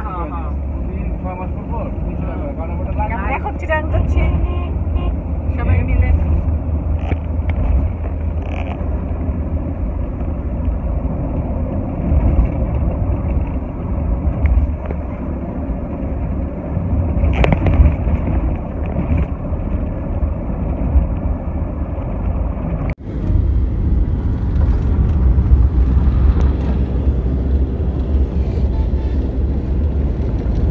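Steady low engine and road drone inside a moving car's cabin, with voices talking now and then. About 23 seconds in the sound drops out for an instant and comes back brighter and hissier.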